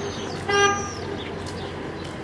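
A vehicle horn gives one short, loud toot about half a second in, over a steady street hubbub with faint bird chirps.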